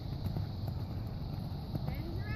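Wind rumbling on the microphone, with faint, muffled hoofbeats of a horse cantering on sand.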